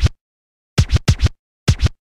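DJ scratch strokes during a break in an electronic music track: short, quick falling-pitch sweeps in small groups, two at the start, three about a second in and two near the end, with silence between them.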